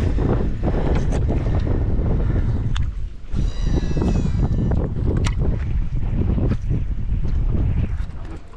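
Heavy wind buffeting the microphone, with water splashing as a hooked bass is fought and reeled in on a baitcasting rod. A brief high whirring tone sounds a little past the middle.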